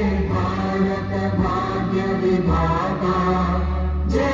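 Chant-like group singing in long held notes, changing pitch every second or so, over a steady low drone.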